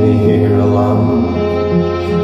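Live folk music on acoustic guitar and a second guitar, held notes ringing on in a slow, droning passage.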